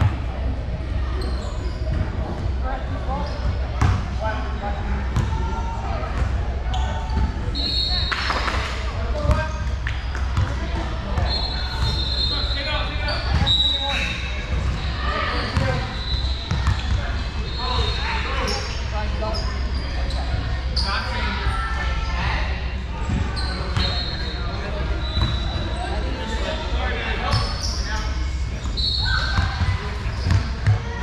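Basketball game sounds in a reverberant gym: a basketball bouncing on the hardwood floor, sneakers squeaking in short high chirps, and indistinct voices of players and onlookers.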